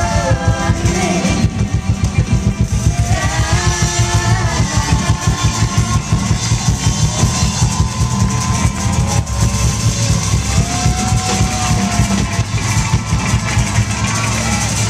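A folk-rock band playing live through a stage PA: drum kit keeping a fast, steady beat under bass, acoustic guitars and banjo, with singing in the first second and again a few seconds in.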